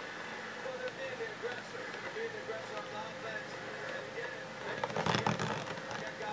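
Cardboard box being slid off its inner tray by hand, with a short burst of scraping and rustling about five seconds in, over a faint steady room hum and faint distant voices.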